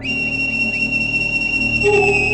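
Film background score: a high, steady whistle-like tone comes in suddenly over a low sustained drone, and a lower held note joins near the end.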